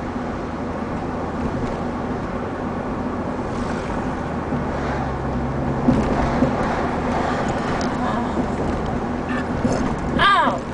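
Steady road and engine noise of a moving car, heard from inside the cabin, with a couple of light knocks about six seconds in.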